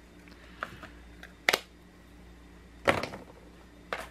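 A few sharp clicks and knocks of plastic ink pad cases being closed and set down, the loudest two about a second and a half apart.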